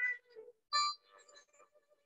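Short notes from an electronic wind instrument (wind synthesizer): one trails off at the start, and a second short note comes about a second in, followed by a few faint fragments.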